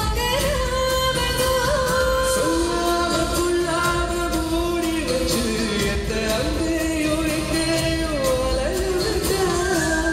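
Live band performing an Indian film song, with a singer carrying a gliding, held melody over drums, guitars and keyboards, amplified through the PA of a large hall.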